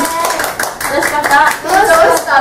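Three women clapping their hands in quick, overlapping claps, with excited voices over them.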